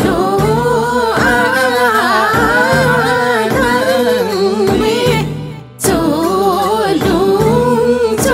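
Limbu palam folk song: a voice singing with a wavering, ornamented line over instrumental backing with low sustained bass notes. About five seconds in, the music fades briefly, then comes straight back.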